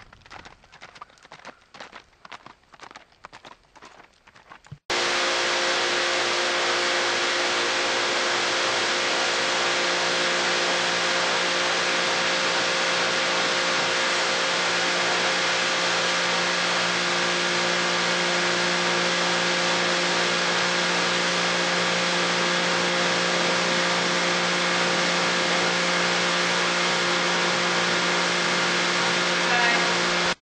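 Hoofbeats of a Tennessee Walking Horse gaiting on a dirt track for about the first five seconds. Then a sudden switch to a pressure washer running steadily: a hiss of spraying water over a constant motor tone.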